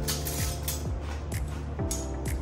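Background music with a steady beat: a low drum thump about twice a second under held chords and light high percussion.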